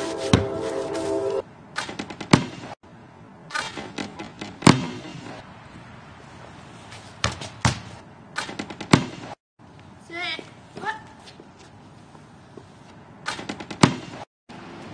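Sharp knocks of a basketball hitting the rim, backboard and ground, repeated across several short cuts, the loudest a little under five seconds in. A held tone sounds through the first second and a half, and a brief chirp-like call comes about ten seconds in.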